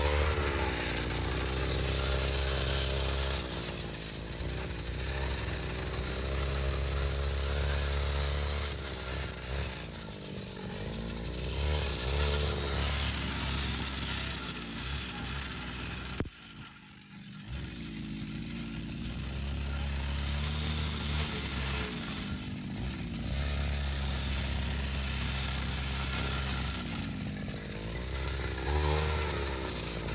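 Backpack brush cutter's small engine running as it cuts grass, its pitch rising and falling as the throttle is worked, with a brief dip just past halfway.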